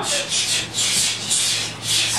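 A fast, even, scratchy swishing, about four or five strokes a second, like a train chugging, over a faint steady low hum.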